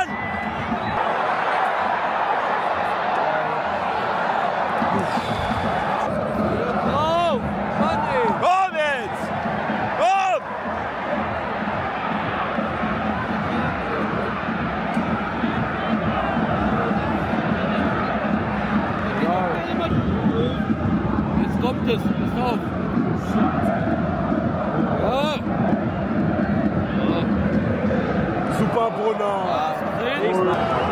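Football stadium crowd: a dense, steady mass of many fans' voices chanting and singing in the stands, with a few short rising-and-falling glides about seven to ten seconds in.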